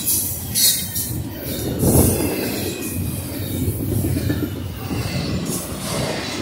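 A Norfolk Southern double-stack intermodal freight train passing close at speed. The cars and wheels give a steady rolling rumble and rattle, with spells of high-pitched wheel hiss and squeal near the start, and a louder knock about two seconds in.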